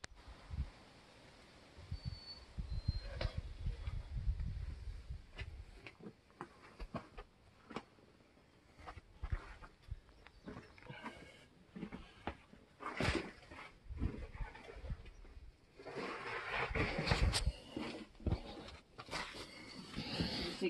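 A person grunting and breathing hard with effort while squeezing through a tight gap between boulders, mixed with scrapes and knocks against the rock and rubbing of the handheld phone. The rubbing makes a low rumble a few seconds in, and a longer bout of straining and scraping comes near the end.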